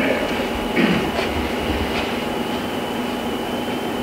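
Steady hiss and electrical hum from a meeting room's microphone and sound system, with a few low bumps and a brief faint murmur about a second in.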